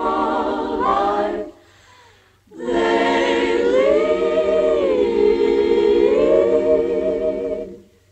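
Background music: a choir singing a cappella, a short phrase that breaks off about a second and a half in, then one long held chord that rises and falls in pitch once before cutting off near the end.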